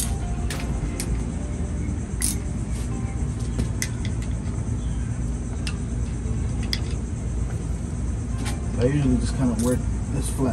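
Scattered sharp metallic clicks and taps of hand tools working at the timing belt tensioner of a Honda B-series engine, over a steady low rumble, with a faint voice near the end.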